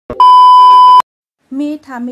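A loud, steady, high-pitched test-tone beep of just under a second, the TV colour-bars 'no signal' sound effect, which cuts off suddenly. A woman's voice starts near the end.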